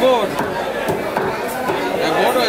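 A butcher's cleaver chopping beef on a wooden block, several short strikes, over people talking nearby.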